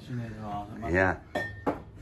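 Two hard clinks of a ceramic vase being set back down on a shelf, the first ringing briefly, between short murmurs of a man's voice.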